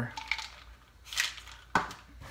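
Quiet handling noises while a pill is taken with a glass of water: a short hiss a little after halfway and a single sharp click near the end.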